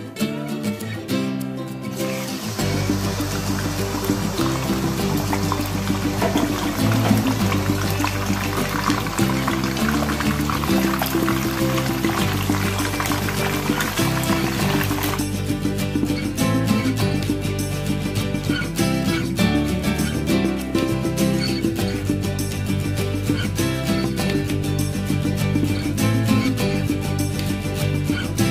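Chicken breast sizzling as it fries in hot oil in a wok, over background music. The sizzle starts suddenly about two seconds in and cuts off about halfway through, leaving the music alone.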